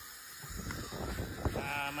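Garden hose spray nozzle running, with wind rumbling on the microphone. Near the end a drawn-out, bleat-like voice begins.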